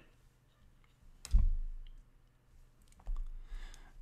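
A sharp click with a low thump about a second in, then a softer knock about three seconds in: a stylus tapping on a pen tablet.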